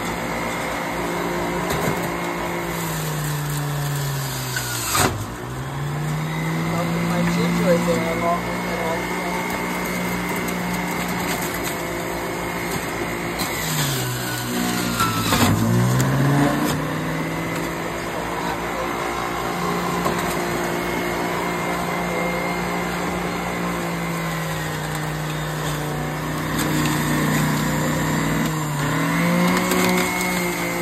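Centrifugal electric juicer motor running with a steady whir. About five and fifteen seconds in, its pitch drops sharply with a clatter and then climbs back, as pieces of pear are pushed down onto the spinning cutter disc and load the motor.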